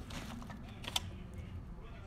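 A plastic bag and a clear plastic food container being handled, with light crinkles and small clicks, the sharpest about a second in.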